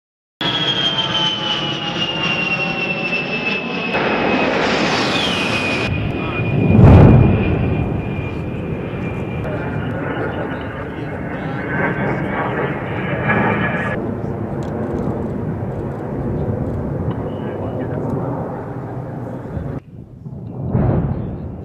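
A-10 Thunderbolt II's TF34 turbofan engines whining as the jet flies past, the high whine falling slowly in pitch. About seven seconds in there is a single loud blast with a deep boom.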